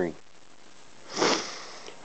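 A man sniffs once about a second in: a short hiss of breath drawn in through the nose that fades away.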